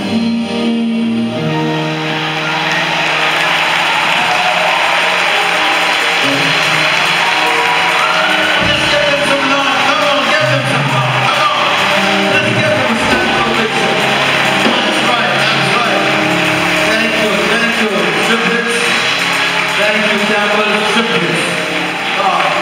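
Church band music playing under congregation applause and cheering, loud and steady throughout.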